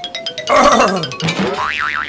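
Cartoon comedy sound effects over background music: a run of quick clicks, then a springy boing whose pitch wobbles rapidly up and down near the end.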